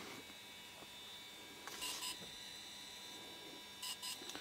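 Quiet room tone with a faint steady electrical hum and thin whine, and a soft brief rustle about two seconds in and again near the end.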